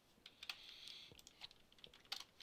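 A few faint, scattered computer keyboard key presses.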